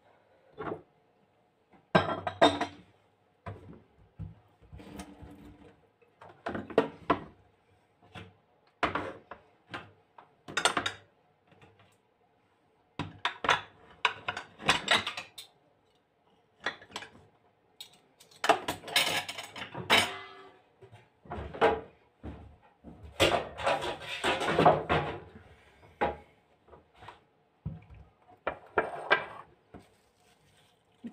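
Dishes and utensils being handled and set down on a kitchen counter while food is laid out: irregular clinks and knocks with short pauses between them.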